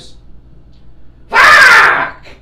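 A man's loud, wordless yell, about half a second long, with a falling pitch, about a second and a half in.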